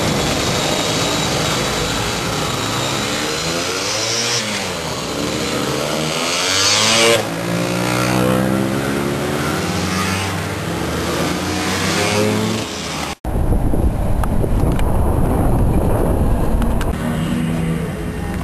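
A group of classic scooters' two-stroke engines running and revving as they ride past one after another, their pitch rising and falling as each goes by. After a sudden cut about 13 seconds in, a steadier low engine hum with heavy low rumble.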